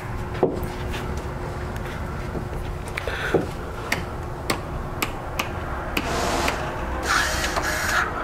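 Footsteps and handling noise inside a trailer's living quarters: irregular light clicks and knocks over a low steady rumble, with a brief rustle about three seconds in and a longer one near the end.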